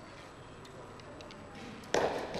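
Light scattered clicks of arrow and bow gear being handled while an arrow is nocked, then near the end one sharp thump that echoes round the hall.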